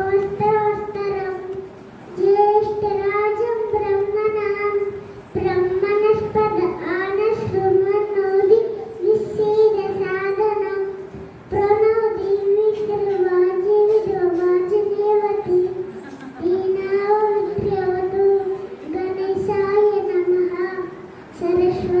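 A small boy singing a devotional hymn solo into a microphone, in a steady, narrow-range melody. He sings in phrases of two to four seconds, with short breaths between them.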